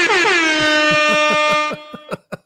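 Air horn sound effect set off at the push of a button: one loud horn blast whose pitch wavers at first, then holds steady and cuts off shortly before the end.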